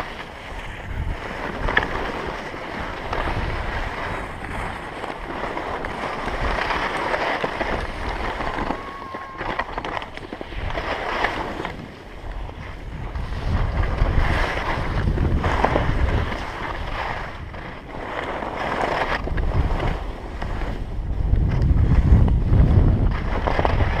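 Skis scraping and hissing over packed, chopped-up snow while wind buffets the microphone, the skier slowing almost to a stop. A low wind rumble on the microphone is loudest near the end.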